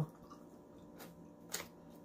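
Faint, wet mouth sounds of chewing lo mein noodles, with two short sharp clicks, one about a second in and another about half a second later.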